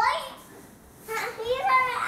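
A toddler's high voice calling out without clear words: a short call at the start, then a longer, rising-and-falling one from about a second in.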